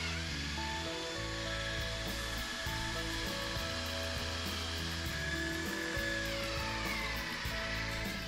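Cordless drill boring a hole through a wooden arbor post. The motor whine holds steady, then falls in pitch near the end as the drill slows and stops. Background music plays throughout.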